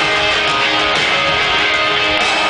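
Live punk-rock band playing loud and steady with strummed electric guitars and drums, heard through an arena's sound system from among the audience.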